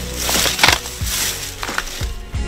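Footsteps crunching on dry leaves and broken plant stalks in a taro patch: several sharp crackles a fraction of a second apart.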